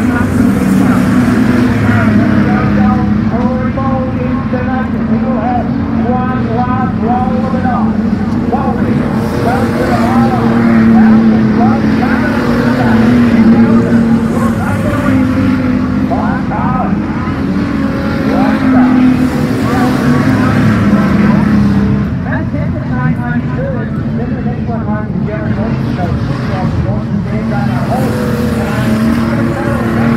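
Street stock race cars running around a dirt oval, engines droning steadily and swelling louder as the pack passes close, with voices mixed in.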